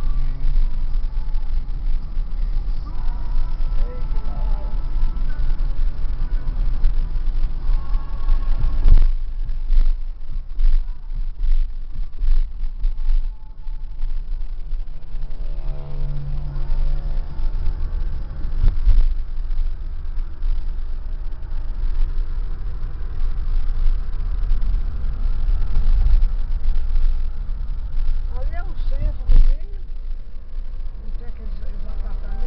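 Steady road noise inside a moving car's cabin: a low rumble of tyres and engine under a haze of wind noise, with a few brief knocks around nine to thirteen seconds in.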